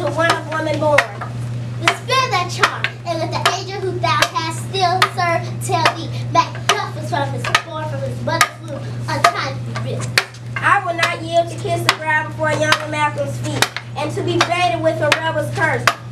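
Wooden sticks used as stage swords clacking together again and again in a mock sword fight, with children's voices throughout and a steady low hum.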